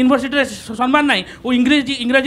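Speech only: a man talking in Odia, in quick, unbroken phrases.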